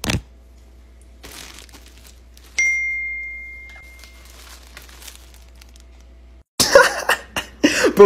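A sharp click, then about two and a half seconds in a single clear chime, like a phone's text-message notification, that fades over about a second and a half. Near the end, loud knocks and voices start suddenly.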